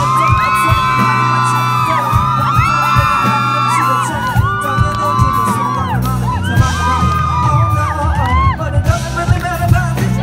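Live pop band music: long held sung notes over drums, acoustic guitar and keyboard.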